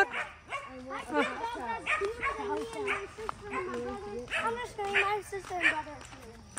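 A dog whining and yipping in a run of short, pitched cries that bend up and down.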